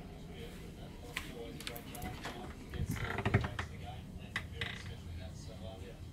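Clothes hangers clicking and knocking on a wardrobe rail as the wardrobe is handled, with a louder cluster of knocks and rustling about three seconds in. Faint voices in the background.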